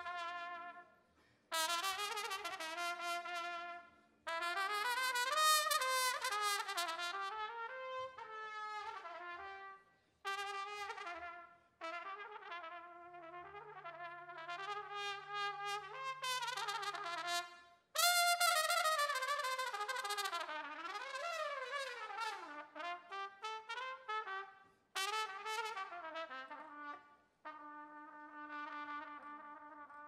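Solo trumpet playing a fast, ornamented melody in phrases a few seconds long with short breaks between them, over low brass holding steady notes. Near the end it settles into long held notes.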